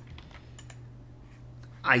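A few faint computer mouse clicks in the first second, over a steady low hum. A man's voice starts near the end.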